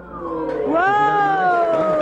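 One high voice giving a long drawn-out 'ooooh' of admiration, starting under a second in and sliding slowly down in pitch, with a man's voice talking beneath it.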